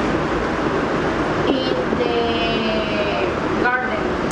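Students' voices overlapping in a classroom, several speaking at once.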